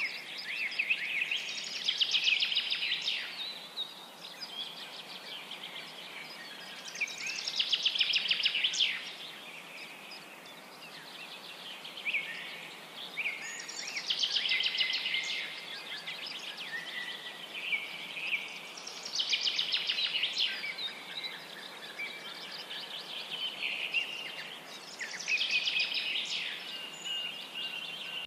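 A songbird sings a high, chirping, rapidly trilled phrase of about two seconds, repeated roughly every six seconds over a faint steady hiss.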